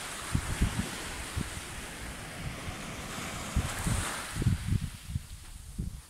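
Small waves breaking and washing up a sandy beach, the surf hiss swelling twice, near the start and again about four seconds in. Wind buffets the microphone in low, uneven gusts underneath.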